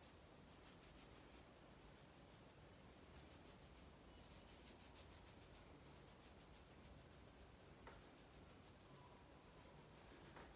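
Faint rubbing of fingertips through hair and across the scalp, massaging in a hair-growth serum, with a single small click about eight seconds in.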